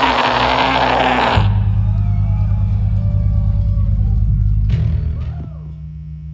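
Live black metal band: loud full-band playing cuts off about a second in, leaving a low droning guitar and bass note. The drone drops in level near the end, with faint voices shouting over it.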